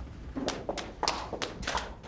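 Footsteps of several people walking across a hardwood floor: an irregular run of sharp taps and light thuds, about six in two seconds, from shoes and heels.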